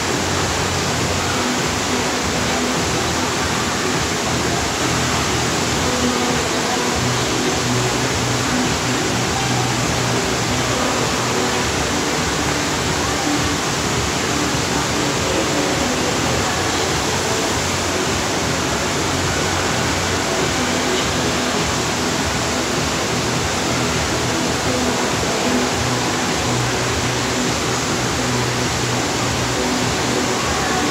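Steady, loud rush of the FlowRider surf machine's pumped sheet of water pouring up the ride surface, with faint music underneath.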